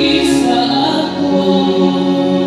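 A choir singing in long held notes.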